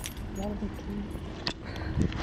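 Faint talking over a steady low outdoor rumble, with one sharp click about one and a half seconds in.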